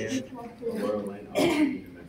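Indistinct talk from a small group of people, with a short, louder vocal outburst a little past halfway through.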